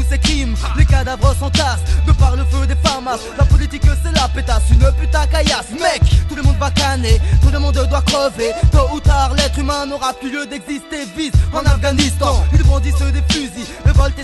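A mid-1990s French hip-hop track: a rapper over a beat of drums and a heavy, pulsing bass line. The bass drops out for about a second around ten seconds in.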